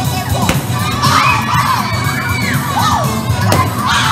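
A group of children shrieking and cheering excitedly in a balloon-stomping game, with a couple of sharp pops of balloons bursting underfoot, one about half a second in and one near the end.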